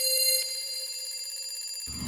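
Alarm clock bell ringing fast and steadily, as a logo sound effect. Near the end a low, deep burst of music comes in under it.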